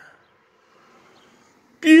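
A man's voice: a word trailing off at the start and another starting near the end, with faint background noise in the pause between.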